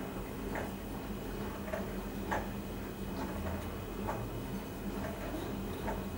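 Faint light ticks, roughly one a second and not quite evenly spaced, over a low steady hum.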